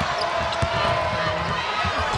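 A basketball dribbling on a hardwood court, low thumps at uneven spacing, over the steady noise of an arena crowd.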